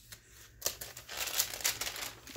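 Stiff paper pages of a handmade junk journal being turned by hand, rustling and crinkling, with some crinkled paper among them. It starts about half a second in and is loudest in the second half.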